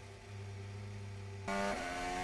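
Formula 1 car's Mercedes turbo V6 engine running at a steady pitch, faint at first and stepping louder about one and a half seconds in.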